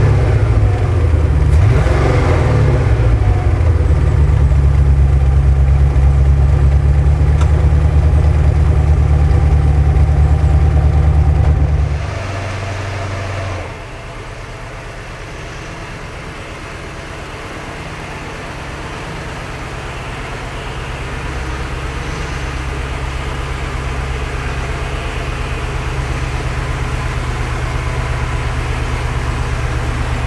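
Porsche 928 V8 running steadily, heard close to its exhaust. About twelve seconds in, the sound drops to a quieter, more distant engine at low speed that grows steadily louder as the car comes nearer.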